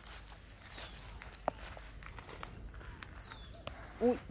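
Footsteps through dry grass and brush: a scatter of soft crunches and clicks, with one sharper snap about one and a half seconds in.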